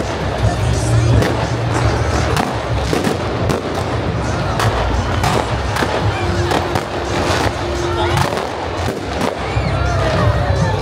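Fireworks going off over a crowd: sharp, irregular bangs about once a second, over music and people's voices.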